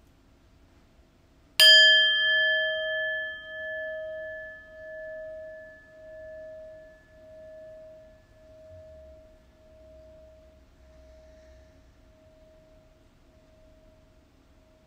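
Brass singing bowl struck once with a wooden mallet about a second and a half in, then ringing with a slow, even pulsing as it fades away over the next ten seconds. Its higher overtones die away first, leaving the low tone.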